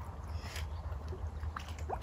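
Shallow, silty water sloshing and squelching as a planting pot is worked down into the mud by hand, with a couple of sharper splashes, under a low steady rumble.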